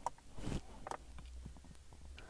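Faint, scattered small clicks as a car's interior rear-view mirror is adjusted by hand, over a low, quiet rumble.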